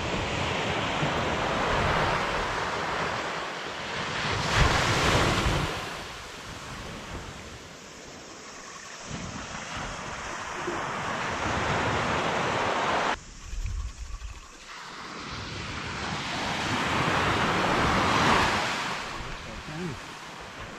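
Surf breaking on a beach, the wash of noise swelling and easing, with wind rumbling on the microphone.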